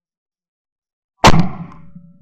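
A single 12-gauge shotgun shot from a Davide Pedersoli La Bohemienne side-by-side hammer gun: one sharp, very loud report about a second in, dying away over about half a second.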